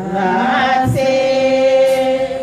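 A congregation singing together without words spoken over it, several voices holding long sustained notes of a worship song.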